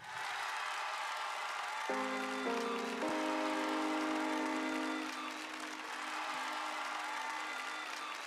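Audience applauding after a dance performance, with a few held musical notes sounding underneath from about two seconds in until about five seconds in.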